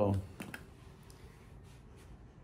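The tail of a man's word, then two quick light clicks about half a second in and a couple of fainter ticks later, over quiet room tone.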